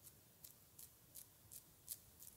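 Faint sticky clicks of honey-coated fingertips tapping on facial skin, a short sharp tick about three times a second in an even rhythm.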